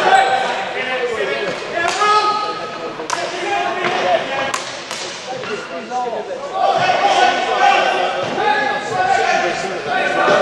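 Indoor hockey play in a large, echoing sports hall: players' voices calling out over the game, with a few sharp knocks of stick on ball at about two, three, four and a half and five seconds in.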